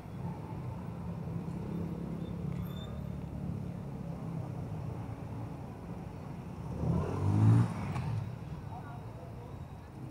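Street traffic: car and motorcycle engines running at low speed around a busy plaza, with one vehicle passing close about seven seconds in, its engine briefly the loudest sound.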